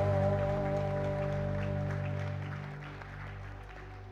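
A live band's held closing chord slowly fading out, with a few faint scattered claps.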